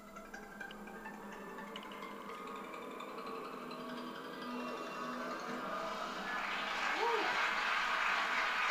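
Television quiz-show score-reveal music: a pitched, chiming jingle that grows steadily louder as the score counts down. Over the last couple of seconds a wash of audience applause comes in over it.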